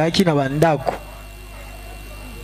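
A man's voice through a microphone, stopping about a second in, then a steady low hum with faint room noise.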